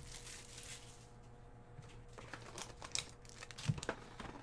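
Faint handling of card-box packaging: a short knock at the start, then light crinkling and clicks of foil and wrapping in the last two seconds as a hobby box is opened and its foil pack taken out.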